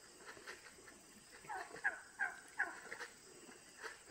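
Turkeys calling as they follow along: a quick run of four short calls, each dropping in pitch, a little before halfway through, with short chirps scattered around them.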